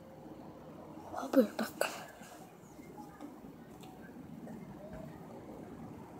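A young child's brief falling vocal sound, with a few sharp knocks from a phone being handled, about a second in. Faint steady background hiss runs under it.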